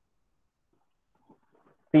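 Faint scratching of a marker writing on a whiteboard, in short irregular strokes. Near the end a man's voice begins speaking.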